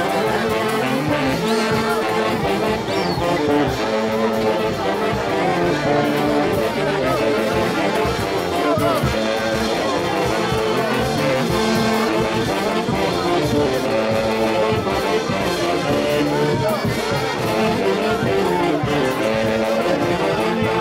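Brass band with saxophones and brass horns playing a tune without a break, over the voices of a crowd.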